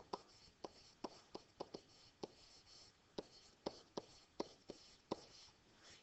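A stylus writing a word by hand on a digital writing surface: a dozen or so faint, irregular light taps with a soft scratchy hiss between them.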